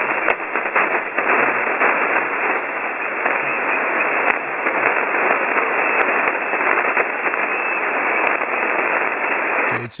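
Shortwave receiver audio on 40-meter single sideband: a steady rushing hiss of band noise, narrow and thin with no high end. A weak voice signal lies barely above the noise, only just there.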